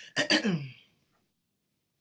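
A person clearing their throat once, its pitch falling at the end.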